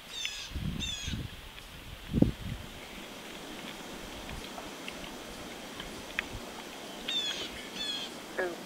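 High bird calls, each a quick run of falling chirps: two near the start and two more near the end, over a faint steady background. A few low thumps come in the first seconds, the loudest about two seconds in.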